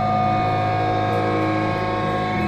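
Live heavy metal band: distorted electric guitars and bass hold one long sustained chord, with a single high note ringing steadily over it and no drum hits.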